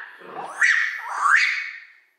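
A small pet dog whining, two rising whines in quick succession.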